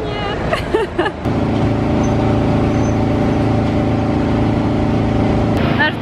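Steady droning hum of a parked jet airliner on the apron, with a low whine on top. It starts suddenly about a second in and cuts off just before speech near the end.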